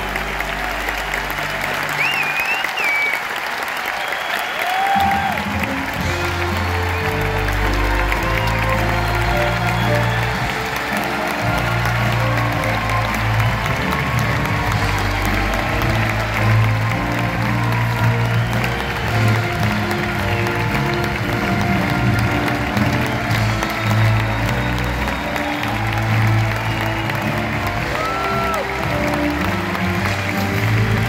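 Arena audience applauding and cheering, with a few whistles, over an orchestra. The orchestra's closing chord stops about two seconds in, and the band starts playing again about five seconds in.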